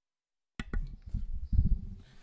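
Dead silence, then a little over half a second in the recording resumes with low thumps, knocks and rustling of a microphone being handled or bumped.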